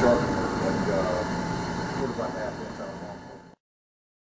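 Victor 618 surface grinder running with a steady hum, which fades down and cuts off abruptly about three and a half seconds in.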